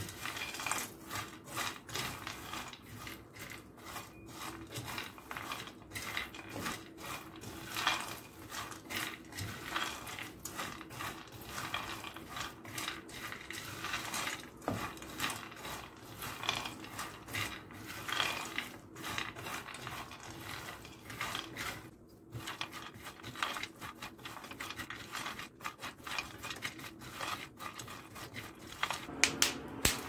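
A spatula stirring a panful of chopped nuts and pumpkin seeds in a frying pan as they roast: a continuous, irregular scraping and rattling of nuts against the pan.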